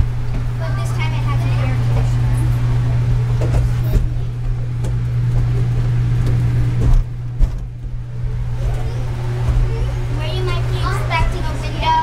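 Indistinct children's voices and chatter over a steady low hum, with a few short knocks about seven seconds in.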